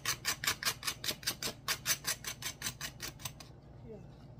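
A knife blade scraping the charred black layer off a slice of burnt toast: quick, even rasping strokes, about six a second, that stop about three and a half seconds in.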